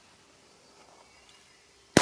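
Near silence, then near the end a single sharp, loud bang as a Hestia 'Super Petardy' firecracker explodes, its echo trailing off.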